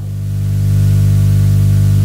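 Steady low electrical hum with a row of overtones, under a faint even hiss; it grows a little louder over the first half second.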